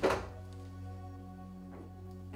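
A refrigerator door is pulled open, and its magnetic door seal lets go with a single thunk right at the start. Soft, steady background music plays under it.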